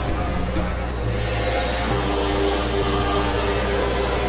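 A national anthem played over a venue's loudspeakers, with held notes over a steady low hum.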